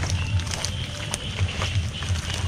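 A mesh fish trap holding live fish being lifted and handled: a steady low rumble with a few faint clicks and rustles.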